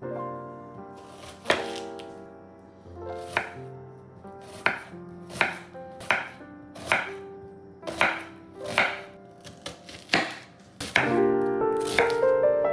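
A chef's knife cutting through an onion onto a wooden chopping board. There are about a dozen separate strokes, roughly one a second, each a sharp cut ending on the board.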